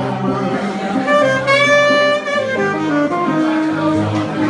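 Live saxophone playing a melody over acoustic guitar accompaniment, with one long held note in the middle of the phrase.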